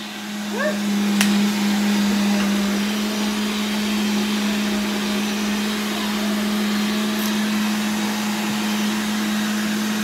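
Countertop blender motor running steadily, a constant whirring hum, while a smoothie is blended; a small click about a second in.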